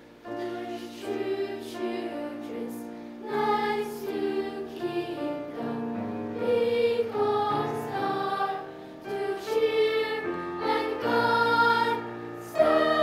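Children's choir singing a Chinese song with grand piano accompaniment, in sustained phrases with short breaks between them.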